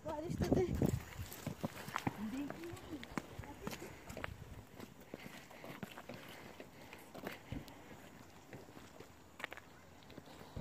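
Brief indistinct voices in the first couple of seconds, then scattered light footsteps and small knocks as the people walk.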